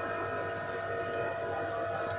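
Steady background hum made of several held tones, unchanging in level.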